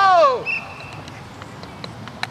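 A single high-pitched shout, about half a second long and falling in pitch, right at the start, followed by a short, thin, high steady tone.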